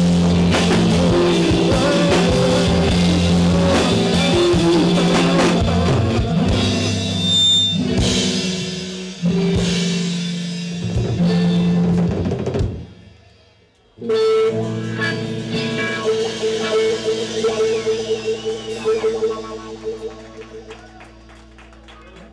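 Live rock band of electric guitar, bass and drum kit playing loud, then breaking off about thirteen seconds in. A final held chord with drum hits starts suddenly a second later and fades out: the end of the song.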